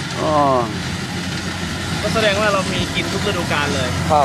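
Voices talking over the steady low hum of an idling engine.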